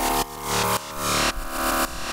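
One layer of a synthesized EBM bass, an Ableton Wavetable patch played solo, adding mid-range and crunch. It swells and dips about twice a second as an auto-pan makes it bounce off the kick.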